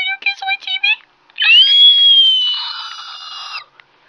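A high-pitched, cartoonish voice making wordless sounds: a quick run of short squeaky rising syllables, then one long held high cry of about two seconds that slowly sinks in pitch and fades before it stops.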